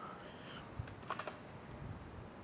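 Quiet computer keyboard keystrokes: a quick cluster of clicks a little past the middle.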